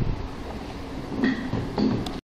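Steady low rumbling background noise, with two brief voice-like sounds, one a little past a second in and one near the end.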